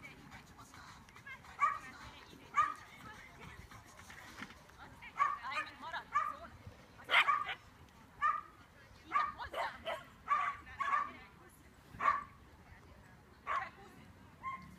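A dog barking repeatedly while running an agility course: a dozen or so short, sharp barks spread through, the loudest about seven seconds in.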